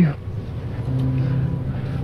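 TV drama underscore: a low, steady held drone note that comes in about a second in, after a short spoken line at the start.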